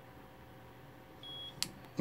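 A single short, high electronic beep about a second and a quarter in, followed by a sharp click: the programming equipment's confirmation that the new alarm remote's lock signal has been learned.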